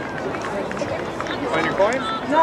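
Several voices of spectators and players talking and calling at once, with a rising shout near the end.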